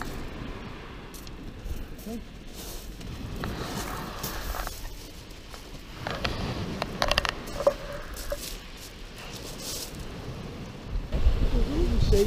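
Scrapes, crunches and clicks of a beach angler's footsteps on shingle and his handling of a long surf rod as he lifts it from its tripod and starts winding in the fishing reel.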